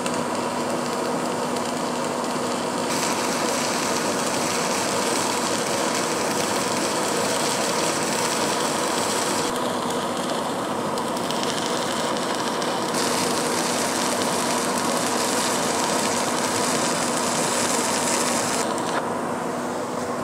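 Stick (MMA) welding arc burning a 2.5 mm Böhler Fox CN 23/12-A (309L rutile-coated chrome-nickel) electrode at about 80 amps, running steadily. It is a continuous, even sizzle whose brightness steps up and down a few times.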